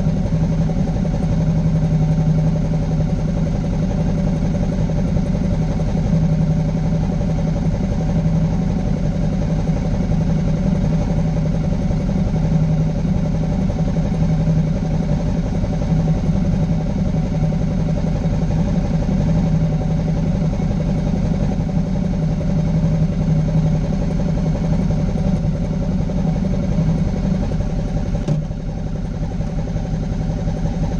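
Motorcycle engine idling steadily, a low even drone with a regular firing pulse, a little quieter near the end.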